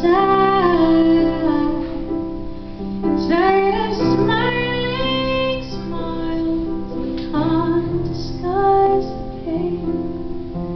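A woman singing while accompanying herself on a Cristofori grand piano: sung phrases with held notes and slides in pitch over sustained piano chords.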